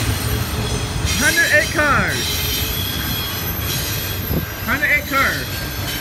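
CSX double-stack intermodal freight train rolling past, a steady rumble of wheels on rail, with thin high wheel squeals about a second in.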